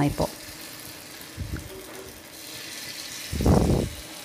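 Batter sizzling softly in hot oil in the wells of a cast kuzhi paniyaram pan, growing slightly brighter about three seconds in. Near the end comes a short, louder scraping as a spoon scoops batter from a plastic bowl.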